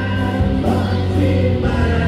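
Rock band playing live: electric guitars, electric bass and drum kit under sung vocals with backing voices, the chord changing about every second.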